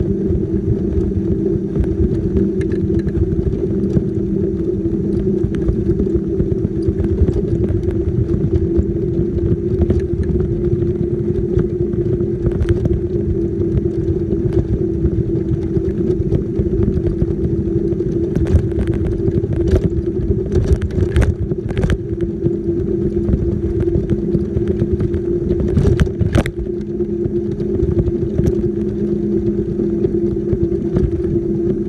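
Motorized wheelchair running fast along a road: a steady drive-motor whine over rumble from the wheels and wind on the microphone. A few sharp clicks or knocks come past the middle.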